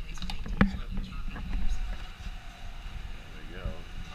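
Hands handling a plastic kart fuel tank as it is worked off the frame: a few light clicks and one sharp knock about half a second in.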